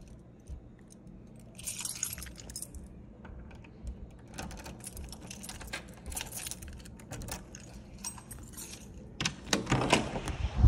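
A bunch of keys jangling in several short bursts, with clicks and knocks as a door is handled; the loudest jingle comes near the end.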